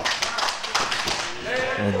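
Quick irregular run of sharp taps and slaps from wrestlers' elbow strikes and footwork on the ring canvas. A man's commentary voice comes in near the end.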